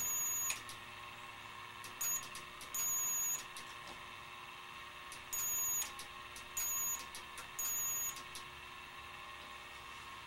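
A high-voltage lifter supply's transformer driver, running near 6.7 kHz, gives a high-pitched whine in six irregular short bursts, as if cutting in and out, over a faint steady electrical hum with a few light clicks.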